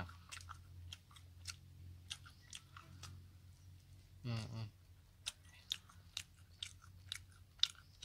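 A person chewing grilled shrimp close to the microphone: irregular small crunching clicks.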